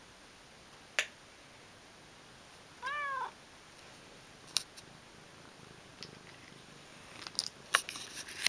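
A domestic cat gives one short meow that rises and then falls, about three seconds in. A sharp click comes about a second in, and a few light clicks and rustles come near the end.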